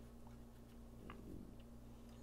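Faint light ticks of small metal knife parts being handled: the handle scale and loose blade of a disassembled flipper knife, twice, about a quarter second and about a second in. A steady low hum runs underneath.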